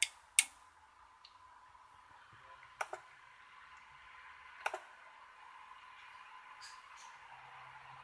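A few sharp, quiet clicks: two close together at the start, then single ones a few seconds apart. A faint steady hum with a thin high tone runs underneath.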